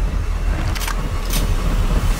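Deep, steady rumble of a large building fire, with two short hissing bursts about half a second apart.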